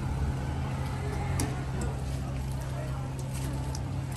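A steady low engine hum with a few faint light clicks over it.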